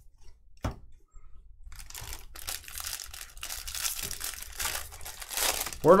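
Foil wrapper of a Topps baseball card pack crinkling and tearing as it is opened by hand, a dense crackle lasting about four seconds. A single sharp tap comes just before it, under a second in.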